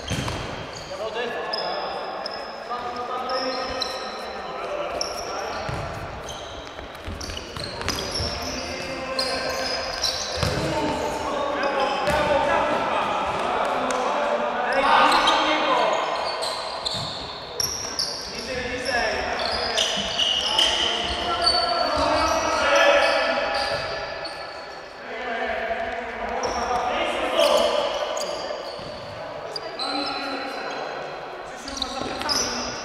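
Futsal ball being kicked and bouncing on a hard indoor court, with players' shouts, all echoing in a large sports hall.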